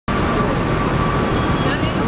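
Busy street ambience: steady traffic noise with indistinct voices, over a thin steady tone.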